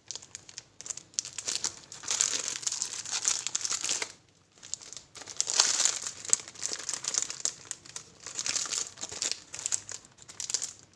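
Clear plastic shrink-wrap on a boxed watercolour set and a palette pack crinkling and crackling as hands turn and handle the packs. It comes in two long spells with a short lull about four seconds in.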